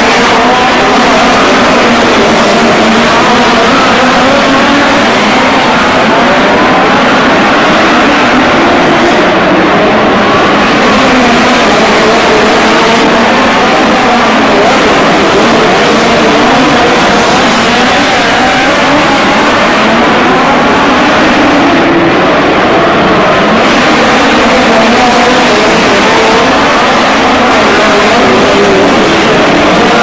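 Several midget race cars' four-cylinder engines running hard at once. Their pitch keeps rising and falling, one over another, as the cars go into and out of the turns, loud and unbroken throughout.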